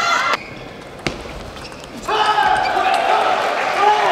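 A single sharp knock of a table tennis ball bouncing about a second in, between voices: a short call at the very start and a long, drawn-out call from about halfway on.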